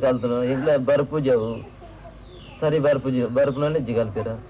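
A man speaking, in two stretches with a pause of about a second between them.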